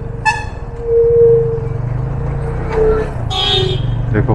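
Yamaha FZ25 single-cylinder motorcycle engine running steadily under way, with vehicle horns sounding on a hill-road bend: a short toot about a quarter second in and a brighter, longer horn blast near the end.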